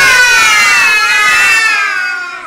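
A young child's voice: one long, high-pitched cry held for about two seconds, wavering slightly in pitch and fading at the end.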